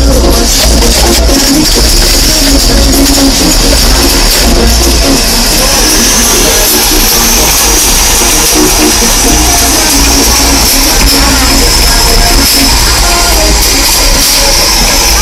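Music played very loud through a car's custom audio system, with heavy deep bass and the level held steadily near the top throughout.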